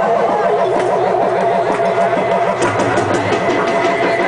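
Electronic dance music played loud over a club sound system: a buzzing synth line pulsing several times a second, with steady tones and sharp high clicks over it.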